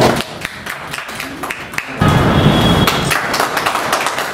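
Scattered hand claps from a small group of people, over music. The claps grow louder about halfway through.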